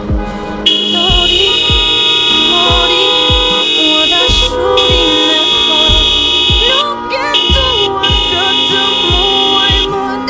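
Car horn honking in long, nearly unbroken blasts, starting just under a second in and stopping near the end, with three short breaks. It sounds over background music with a steady beat.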